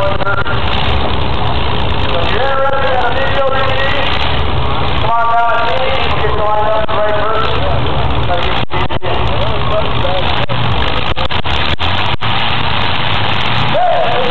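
Demolition derby cars' engines running in the arena, a continuous loud low rumble under a voice heard at times.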